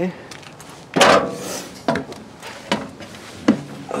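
Footsteps climbing an RV's fold-out entry steps: four heavy treads a little under a second apart, the first the loudest.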